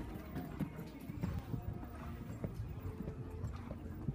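Horse hoofbeats: a string of irregular, muffled thuds.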